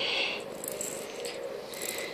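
A plastic ball filled with small rattling beads rolling around the plastic circular track of a cat track-ball toy, giving a jingling rattle that is louder in the first half second and then fainter.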